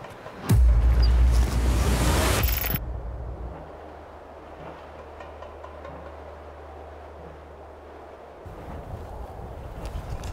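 Wind gusting over the microphone: a loud rushing noise with a deep rumble that starts suddenly and cuts off sharply after about two seconds. A faint steady low drone follows.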